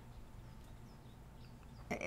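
Quiet room tone in a pause between speech, with a few faint, short high chirps in the middle of the pause.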